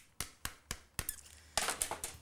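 A few light clicks of kitchen utensils in quick succession, roughly a quarter of a second apart, then a short scrape near the end, as melted butter is added to the fish-cake mixture.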